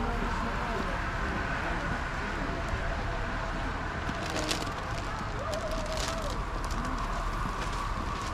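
Steady outdoor urban background noise with faint, distant voices of passers-by, and a few short clicks around the middle.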